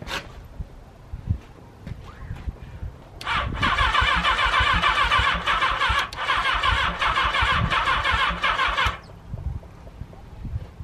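Electric starter cranking a 1975 Honda CB550's four-cylinder engine for about six seconds, starting about three seconds in and cutting off suddenly, without the engine catching. A few small knocks come before it.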